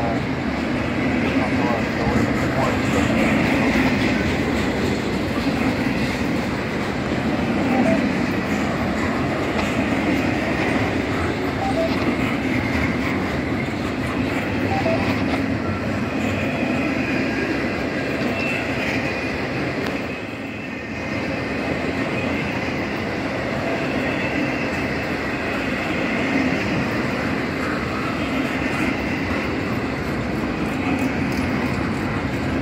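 Double-stack intermodal freight cars rolling past at speed: the steady noise of steel wheels on rail, with a brief lull about two-thirds of the way through.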